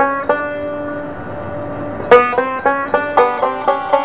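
Banjo playing: a few plucked notes ring out and fade over the first two seconds, then a quick run of picked notes follows from about two seconds in.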